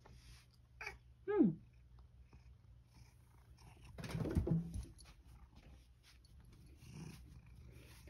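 Domestic cat gives one short meow that falls in pitch, about a second in. Around four seconds in comes a louder bump and rustle as the cat jumps up onto a towel-covered stand.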